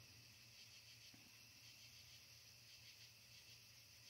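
Near silence: a faint, steady chorus of night crickets over a low steady hum.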